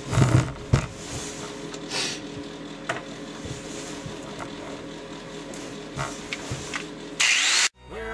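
Cast-iron exhaust manifold handled and set down on a wooden workbench: a few sharp knocks in the first second, then low, steady background with faint ticks. Near the end, a short loud burst of hissing noise that cuts off abruptly.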